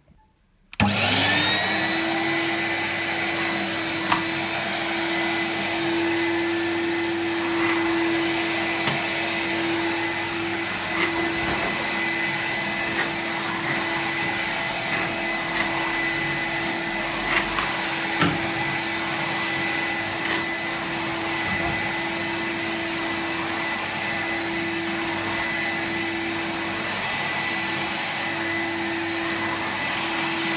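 A 1993 Numatic NV 200 cylinder vacuum cleaner switches on about a second in and spins up to a loud, steady run with a constant whine, vacuuming carpet with its floor tool. A few light knocks are heard along the way.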